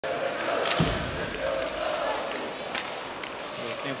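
Ice hockey game in an arena: crowd murmur with sharp knocks of sticks and puck on the ice, and a heavy thud about a second in.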